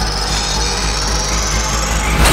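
Tense horror film score: thin high held tones over a steady low rumble.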